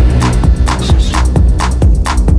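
Techno track in a DJ mix: a steady four-on-the-floor kick drum at about two beats a second, with a heavy bassline coming in right at the start.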